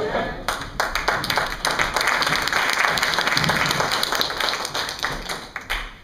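Audience applauding: dense clapping that starts about half a second in and dies away near the end.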